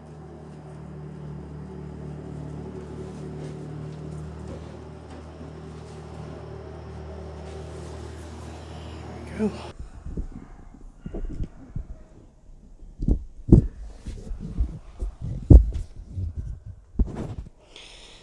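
A steady low mechanical hum with a pitched drone for about the first half. It stops abruptly, and the rest is a run of irregular knocks and thumps from handling the plant and the plastic tote, the loudest a little after the middle of that stretch.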